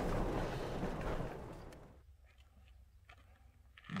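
Road and engine noise of a car driving on a dirt road, heard from inside the cabin as a steady rumble and hiss, fading out about two seconds in and leaving near silence.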